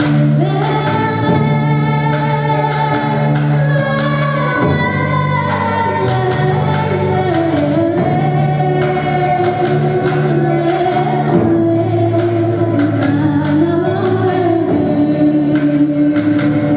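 A woman singing live through a microphone with a band accompanying her, holding long notes that waver in pitch over a steady low accompaniment.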